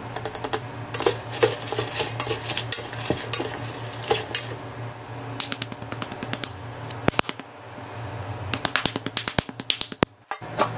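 A spoon clinking and tapping against a stainless steel pot, with quick clusters of small clicks as seasoning and spice powder are shaken in; a steady low hum runs underneath.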